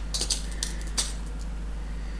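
Tiny metal crimp beads clicking and rattling in a small tin as fingers pick through them: a quick cluster of light clicks, then two more, the last and sharpest about a second in.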